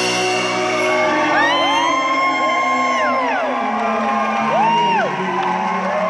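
A live rock band's final chord ringing out at the end of a song, fading near the end, while the audience cheers with high, drawn-out whoops, a long one and then a shorter one.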